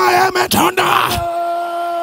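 A man's wordless, drawn-out cries in prayer, each scooping up in pitch and then held on one note: a short one at the start, then one from about half a second in held steady for over a second and a half.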